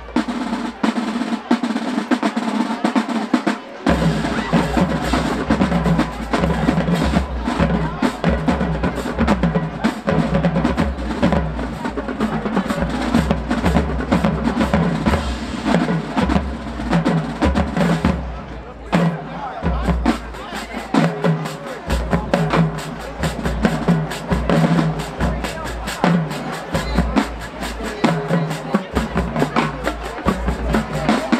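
Marching band drumline playing a percussion feature: fast snare drum rolls and strikes, with deep bass drums joining about four seconds in, and a short break a little past halfway.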